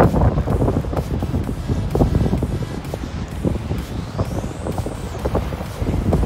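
Wind buffeting the microphone in uneven gusts, with breaking surf behind it.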